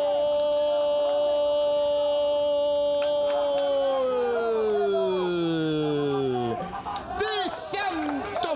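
A television commentator's long drawn-out goal shout: one held note for several seconds, then a downward slide in pitch that ends about six and a half seconds in. Short, broken vocal sounds follow near the end.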